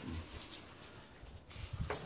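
Soft, faint low thuds of gloved hands folding and pressing a ball of potato dough on a wooden board, a few just after the start and a cluster near the end.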